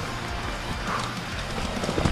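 Mountain bike rattling and knocking irregularly as it rolls over a rough dirt and rock trail, with background music playing over it.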